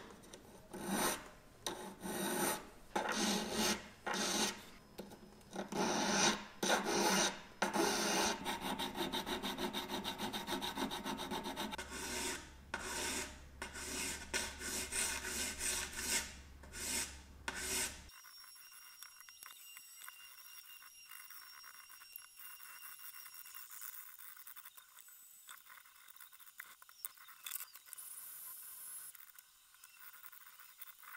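Flat hand file rasping across a small 18-carat gold piece held against a wooden bench pin, in separate strokes at first and then in quicker, steadier strokes. The filing stops about two-thirds of the way through, leaving only faint small ticks.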